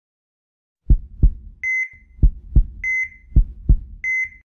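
Heartbeat sound effect, a low double thump repeated about every 1.2 seconds, each followed by a short high beep like a hospital heart monitor's; it starts about a second in.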